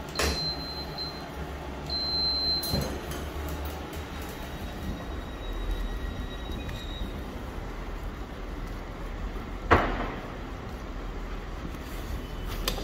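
Touch panel of a powered toilet door beeping twice, with a high steady tone, in the first few seconds as the door is opened. Then railway platform ambience with a low rumble, and one sharp knock near the end.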